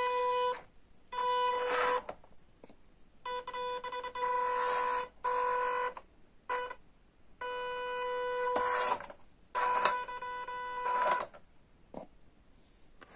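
The electric motor and geared drivetrain of an MN168 RC crawler whining in about seven short bursts of gentle throttle as it crawls over a stack of tyres. It makes a steady high-pitched tone that starts and stops with each throttle blip, the sound of low-rate, low-speed throttle modulation.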